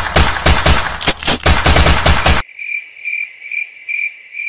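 A loud, rapid run of percussive hits stops abruptly about two and a half seconds in. It gives way to crickets chirping in an even rhythm, about three chirps a second, the stock comedy cue for an awkward silence.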